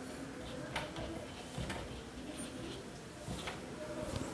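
Marker writing on a whiteboard: strokes with a few light taps and a short high squeak of the felt tip on the board.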